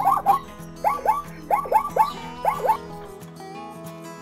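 Zebra barking call: a run of about ten short yelps, each rising then falling in pitch, in quick groups of two or three, stopping about three seconds in. Guitar music plays underneath.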